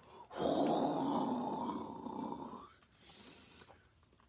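A man blowing a long, hissing breath out through his mouth to make the sound of the wind, fading away after about two and a half seconds, then a short fainter puff.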